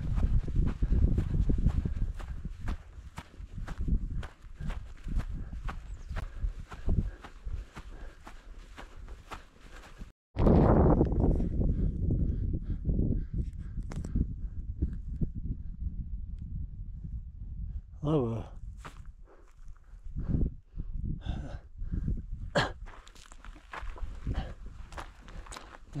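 A hiker's footsteps on a grassy mountain slope, a steady tread of about two steps a second, over a low rumble. About ten seconds in the sound cuts; after it the low rumble carries on, with a few short breathy, voice-like sounds near the end.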